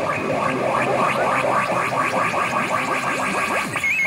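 Pachinko machine sound effects as the digital reels of a P Umi Monogatari 5 spin: a rapid, even run of electronic clicks that stops just before the end, followed by a short warbling tone as two matching numbers line up for a reach.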